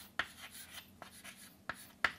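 Chalk writing on a chalkboard: a series of short scratching strokes, with a sharper tap near the start and another near the end.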